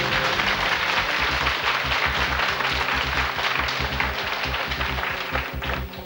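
Studio audience applauding a correct answer over the quiz show's background music with a steady low beat; the applause dies away near the end.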